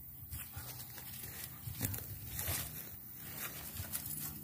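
A Thai Ridgeback sniffing and rustling through weeds and plant stems. The sounds are short and irregular, scattered throughout.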